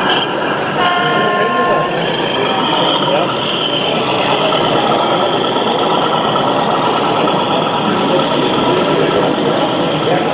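A model diesel locomotive's horn sounds one toot, about a second long, near the start. Behind it runs a steady din of crowd chatter.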